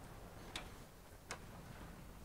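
Two faint, sharp clicks about three quarters of a second apart, over a quiet, steady low room hum.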